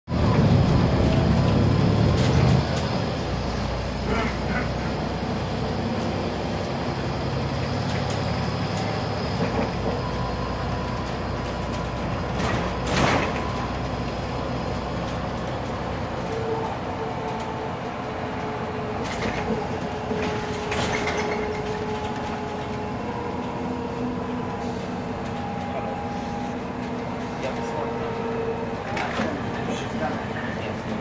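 Interior of a Volvo 7000 city bus under way: the engine and drivetrain running with road noise, loudest and deepest in the first two and a half seconds, then steadier. A few short knocks and rattles, the strongest about thirteen seconds in.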